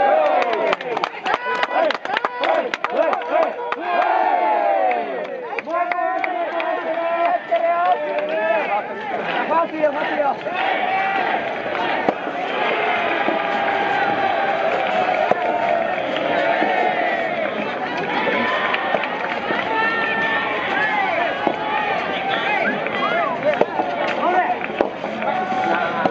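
Many voices shouting and cheering at once, overlapping, from the crowd of teammates and spectators courtside at a soft tennis match. A run of sharp clicks or taps sounds in the first few seconds.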